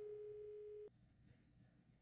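A single steady telephone tone lasting about a second, then cut off abruptly into silence: the call has gone straight to voicemail.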